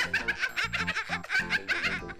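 A woman laughing hard in quick repeated bursts over background music.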